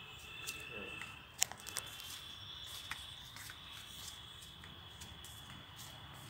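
An insect's steady high-pitched trill from the garden vegetation, with a few sharp clicks, the loudest about a second and a half in.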